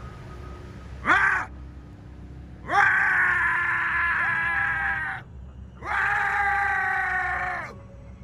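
A man yelling wordlessly to scare off a charging bear. There is one short shout about a second in, then two long, loud, drawn-out yells, each rising in pitch at the start and then held.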